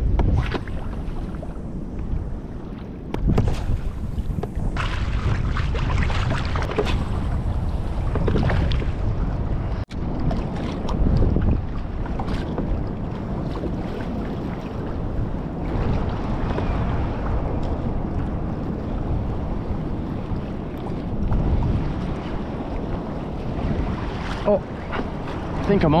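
Wind buffeting the microphone over choppy sea, with small waves lapping and slapping against a kayak hull in an uneven, continuous rush.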